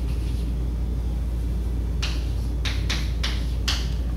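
Chalk writing on a blackboard: about two seconds in, a run of roughly seven short scratchy strokes as a word is chalked. Under it is a steady low hum.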